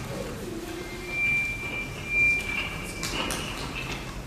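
A thin, high whistling tone, steady in pitch, held for about two seconds from about a second in and swelling twice, with a few short knocks near the end.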